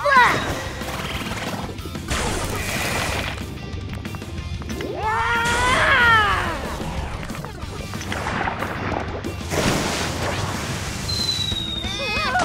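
Cartoon soundtrack: background music with crash and impact sound effects. About five seconds in there is a long pitched sound that rises and then falls.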